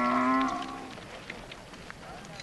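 A cow mooing once: a single held call that is loudest at the start and fades out within the first second.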